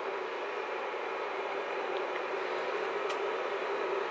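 Steady hum of a Z-Potter induction heater running, its fan noise carrying one held low tone, with a faint tick about three seconds in.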